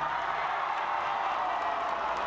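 Crowd in the bleachers cheering and clapping, a steady mass of noise.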